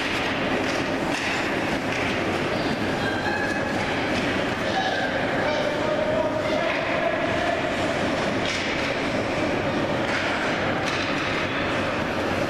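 Ice hockey game sound in an echoing indoor rink: skates scraping the ice and a few sharp stick or puck clacks over a steady rumble, with scattered voices.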